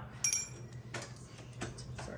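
Small metal-on-metal clinks and ticks as a screwdriver and screws work against the sheet-metal frame of an oven door during reassembly. A sharp ringing clink comes about a quarter second in, followed by a few lighter ticks.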